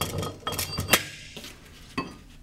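Steel torque limiter parts clinking against each other as they are handled: several sharp metallic clinks in the first second, the loudest about a second in, and another at the end.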